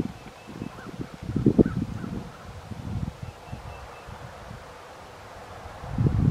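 Gloved hands digging and rummaging through dry leaves and soil, rustling in irregular spurts, loudest about a second and a half in.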